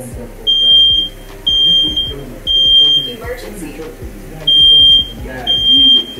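Nest Protect smoke alarm sounding: three high, steady beeps about a second apart, a pause, then three more. This is the temporal-three pattern that signals smoke.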